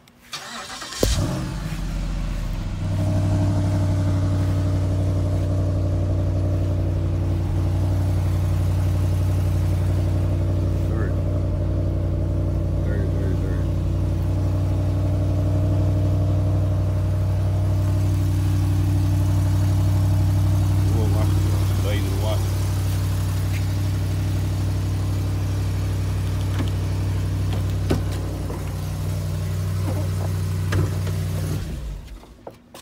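Cold start of a Jeep Grand Cherokee SRT8's 6.1-litre HEMI V8 with a cold air intake. The engine cranks and catches with a sudden loud burst about a second in. It then settles into a loud, steady fast idle.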